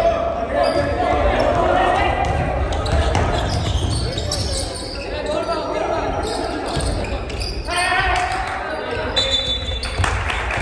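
Basketball game on a wooden gym court: a ball bouncing as it is dribbled, with players shouting and calling out, all echoing in a large hall.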